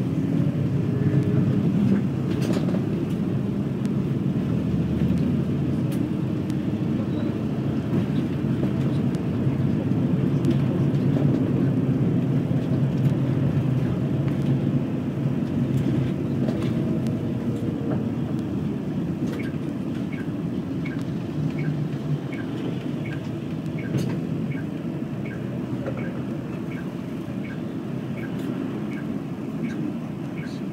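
Cabin noise inside a moving highway bus: a steady rumble of engine and road. Through the second half there is a faint, regular ticking.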